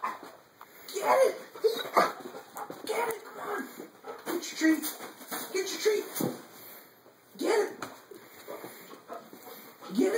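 American Staffordshire terrier whining and whimpering in a string of short, pitched cries, a sign of its fear of the vacuum cleaner it is being coaxed towards.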